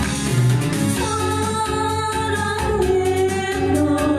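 A woman singing a Korean popular song live into a microphone, with instrumental accompaniment and held, sustained notes.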